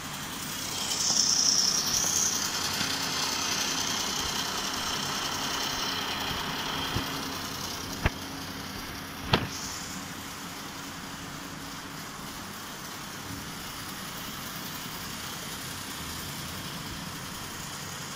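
Plastic gear train of an eclipse model turning with a steady mechanical whir that is loudest in the first few seconds, with two sharp clicks about eight and nine seconds in.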